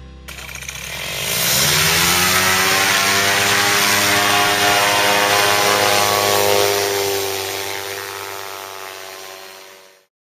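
A small aircraft engine revving up, its pitch rising over about a second, then running at high revs at a steady pitch before fading away over the last few seconds.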